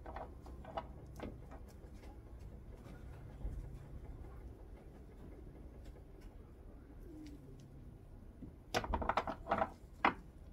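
Low, quiet hum under a few soft clicks and taps as rib racks are laid on a grill grate, with a short cluster of louder taps near the end. A bird cooing faintly in the background.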